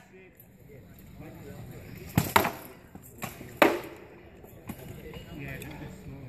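Sword blows landing on shield and armour in a full-contact sword-and-shield bout: two sharp hits in quick succession about two seconds in, then two more about a second later, and a lighter one near the end.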